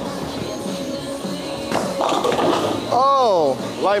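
Bowling ball hitting the pins about two seconds in, with a short clatter of falling pins: a light-pocket strike in which the pins mix and all go down.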